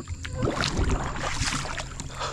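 Water splashing and sloshing close to the microphone around a small makeshift floating craft, with irregular knocks and low rumble. It starts about half a second in.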